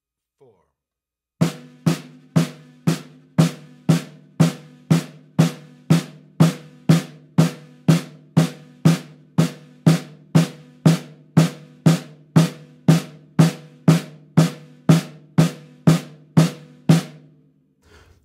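A snare drum played in steady eighth notes with alternating right and left sticks, about two even strokes a second for four bars, each stroke ringing briefly. The playing starts about a second and a half in and stops shortly before the end.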